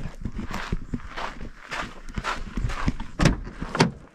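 Footsteps on a dirt and gravel track, an uneven run of short scuffs and knocks. Near the end come two sharp clicks about half a second apart as the Jeep's rear window is unlatched.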